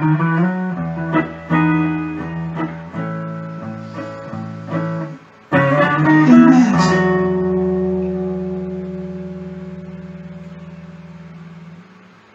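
Hollow-body archtop guitar playing a run of strummed chords, then a final chord struck about five seconds in and left to ring, fading slowly away as the song ends.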